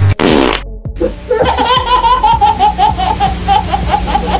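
A baby laughing hard in a quick, even run of repeated laughs, over background music with a beat. A short whoosh comes just before the laughter begins.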